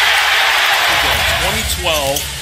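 Arena crowd cheering a home-team three-pointer just made; a voice cuts in near the end.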